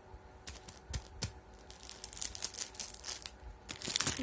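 Thin clear plastic sheet crinkling and crackling as it is handled: a few separate clicks at first, then a denser run of crackles from about halfway through.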